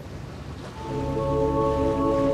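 Background music of sustained, held chords swelling in about a second in, over a steady rushing of wind and choppy sea.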